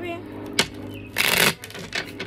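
A deck of tarot cards being shuffled by hand: a single sharp tap about half a second in, then a short, loud riffle of the cards a little past a second in.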